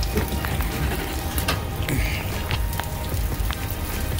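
Pouring rain falling on wet asphalt pavement: a steady hiss with many scattered drop ticks.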